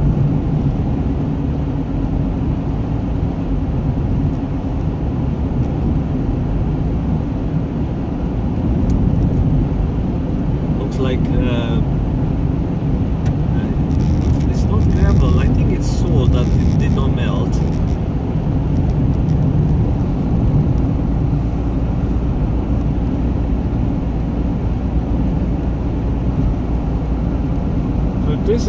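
Steady low rumble of a car on winter tyres driving over a snow- and ice-covered highway, road and engine noise heard from inside the cabin. A few brief crackles come midway.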